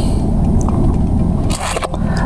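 Loud rubbing and rustling noise, heaviest in the low range, with a sharper scrape near the end: the sound of a clipboard and coat being handled close to the microphone.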